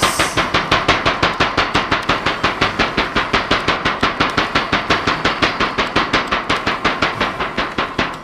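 A fast, even drum rhythm played as accompaniment for a pole display, with steady beats repeating several times a second.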